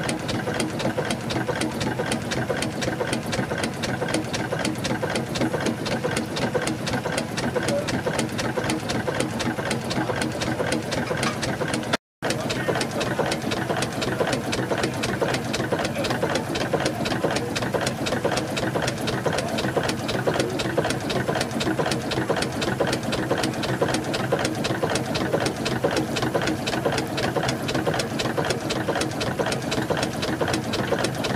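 Burrell Gold Medal Tractor steam engine running steadily, its crosshead, connecting rod and valve gear clattering in a fast, even rhythm. The sound breaks off for a moment about twelve seconds in.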